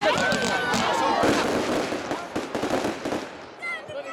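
A firework shooting a column of white sparks skyward with a loud, crackling hiss that dies away after about three seconds. People's voices come in near the end.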